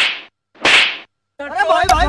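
Two sharp slap hits about two-thirds of a second apart, each fading quickly, as blows land in a staged fight.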